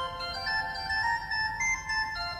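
Organ music: a slow melody of long, held notes.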